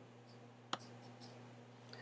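A single computer mouse click about three quarters of a second in, over a faint, low, steady hum.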